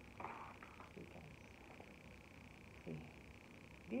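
Faint, brief rustle of a plastic wrapper being lifted out of a cardboard box, followed by a few soft handling ticks. A steady, faint, high-pitched tone runs underneath.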